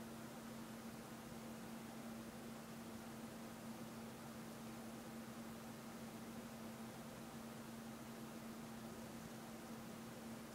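Faint steady hiss with a low, steady hum that holds one pitch throughout.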